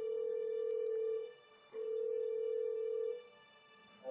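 Video-call ringing tone from a laptop: two long steady beeps at one mid pitch, each just over a second, with a short gap between, as an outgoing call rings.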